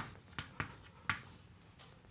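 Chalk writing on a blackboard: a few short, sharp taps and strokes, the first the loudest, as a heading is written and underlined.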